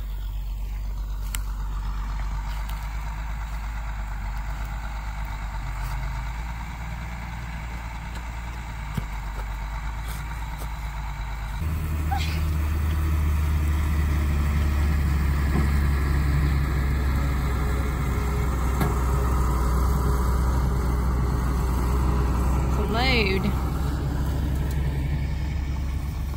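A heavy truck's engine runs steadily across the field as a low drone that gets much louder after a cut about halfway through. A short whooping call from a voice comes near the end.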